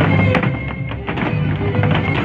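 Mexican folk dance music played loud, with the dancers' zapateado footwork, heels and soles striking the stage floor in quick repeated stamps, over it.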